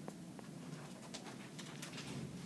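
Faint, irregular clicks of a stylus tapping on a tablet screen as a dashed line is drawn, a few light taps over a low room hum.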